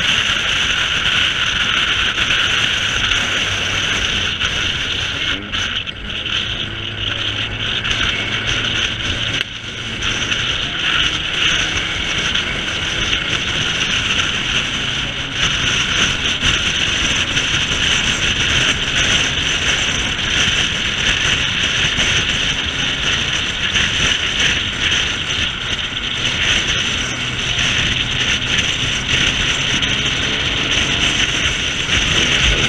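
Car cruising at motorway speed, heard through a camera mounted outside on its bonnet: a steady rush of wind over the microphone with road noise and a low engine drone underneath.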